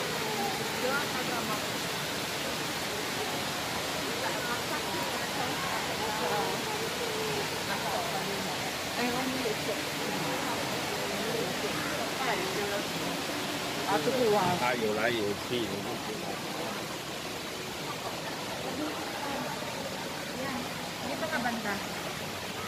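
Public walkway ambience: a steady rushing noise with faint chatter of passers-by throughout, and a brief louder burst of voices about two-thirds of the way through.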